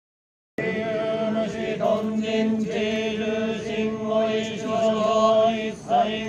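Shugendō yamabushi chanting in unison, a droning chant held on one low pitch, starting about half a second in.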